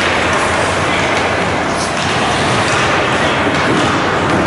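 Steady, even din of an ice hockey game in a rink: skates on the ice and general arena noise blending into a constant rumble, with a few faint clicks.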